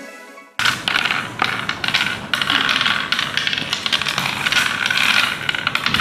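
Small playing pieces clicking and rattling in quick succession as they are dropped into the hollows of a wooden congkak board, after background music cuts off about half a second in.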